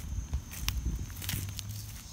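Footsteps of a person walking over dry leaf litter and wood chips, irregular thuds with small crackles, under a steady high-pitched insect drone.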